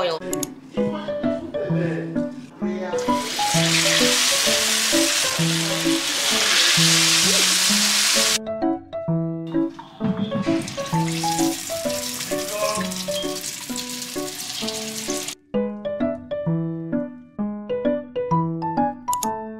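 Akara (black-eyed-pea bean-cake batter) frying in hot oil: a loud sizzle in two stretches of about five seconds each, both cutting off suddenly. Background piano music with a steady repeating melody plays throughout.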